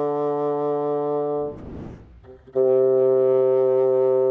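Solo bassoon playing long held notes in its low-middle register. The first note breaks off about a second and a half in, there is a brief pause with a soft rush of air, and a second long note sounds from a little past two and a half seconds.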